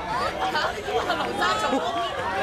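Several voices talking and calling out over one another, with no single clear speaker.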